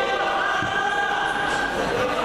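A voice held on one long steady note for most of two seconds, over the background of many voices in a large hall.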